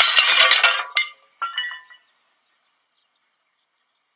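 Ceramic pots smashing on stone paving: a loud crash with shards clattering for about a second, then a few pieces clinking as they settle.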